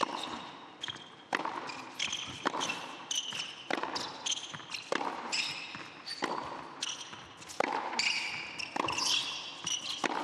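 A tennis ball hit back and forth on an indoor hard court: sharp racket strikes and ball bounces come every half second to second. Short high squeaks of players' shoes on the court surface fall between the hits.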